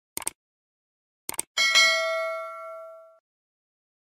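Subscribe-button animation sound effect: two quick double clicks about a second apart, then a bell ding that rings out and fades over about a second and a half.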